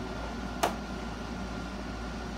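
A single sharp click about half a second in, a latch on a hard carrying case snapping open, over a steady low room hum.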